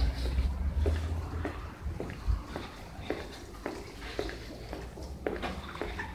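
Footsteps on a hard tiled floor, a little under two steps a second, with a low rumble fading out over the first two seconds.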